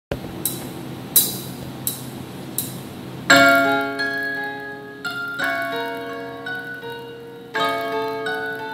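Korg keyboard played through PA speakers: four evenly spaced clicks, a count-in, then about three seconds in the song's introduction starts with sustained chords that change every couple of seconds.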